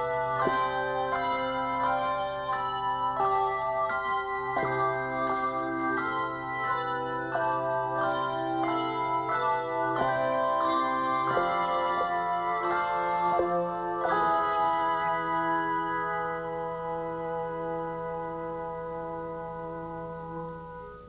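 Handbell choir ringing a piece: many handbells sound a melody and chords over long-held low bass bells. In the second half the new strikes thin out and a held chord slowly fades.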